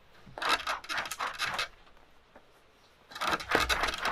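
Rabbit hide rubbed back and forth over a taut wire cable, a scratchy rubbing in two bouts: one lasting about a second and a half, then a second starting about three seconds in. The hide is being worked over the cable to break its stuck fibers apart and soften it.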